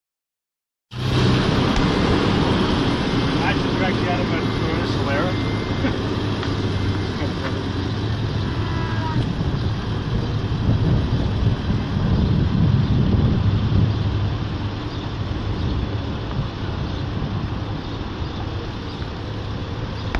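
After about a second of silence, a Toyota FJ Cruiser's power-retracting soft top folds back, its roof mechanism working under a steady low hum and wind buffeting the microphone, with faint voices in the background.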